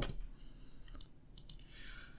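A few short clicks at a computer over faint room tone: one about halfway through, then two close together.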